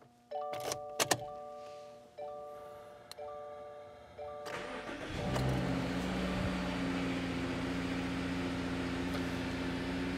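Key clicks in the ignition and a repeating dashboard chime, then the 2019 Subaru Crosstrek's flat-four engine cranks and starts about four and a half seconds in, revs briefly and settles into a steady idle. The start on the newly programmed H-chip key is the sign that the immobiliser and engine computer are back in sync.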